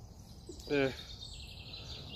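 A man's single brief hesitant 'äh' over steady low background noise. A faint thin high tone runs underneath and steps down in pitch partway through.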